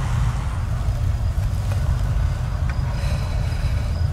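Steady low rumble of a car's engine and road noise, heard from inside the cabin while it is driven.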